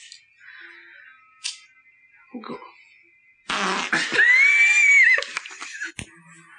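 A loud, drawn-out fart from a comedy clip, starting about three and a half seconds in and lasting about two seconds, with a squeaky pitch that rises and falls partway through. Before it there are only a few faint sounds.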